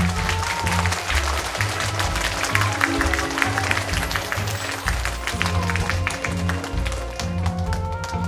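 Audience applauding over backing music with a steady bass line during a scene change. The clapping thins out near the end while the music carries on.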